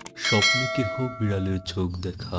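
A click, then a single bell ding that rings on for about a second and a half: the sound effect of a subscribe-button and notification-bell animation.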